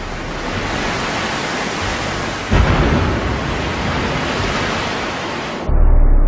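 Rushing, splashing sea water, with a sudden low boom about two and a half seconds in. Near the end the sound turns dull and deep, the highs gone, like water heard from below the surface.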